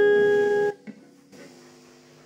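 The last note of a song on an acoustic guitar rings out and fades slowly, then is damped suddenly by hand a little under a second in. A couple of faint clicks and a low leftover string ring follow.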